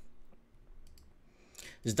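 Computer mouse clicking faintly a couple of times about a second in, as a video's progress bar is clicked to skip ahead.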